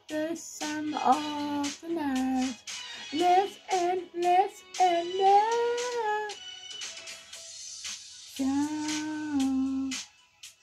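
A song: a solo voice singing a sliding, held-note melody over sparse backing with light percussive ticks. The voice pauses briefly about seven seconds in, then returns with one long held note.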